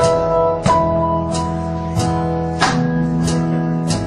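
A live band playing a slow song's instrumental opening, led by an acoustic guitar strumming chords that ring out, about one strum every two-thirds of a second, over sustained lower notes.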